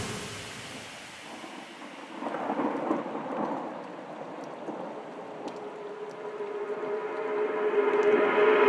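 Breakdown in a bass house DJ mix: the kick drum and bass drop out, leaving a quieter rumbling, noise-like texture with a held synth tone that builds in level toward the end.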